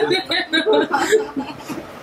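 Laughing chuckles in short repeated bursts, about four a second, trailing off after about a second.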